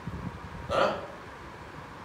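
A man's short, sharp vocal noise, a breath or throat sound, about a second in, over a low steady room hum.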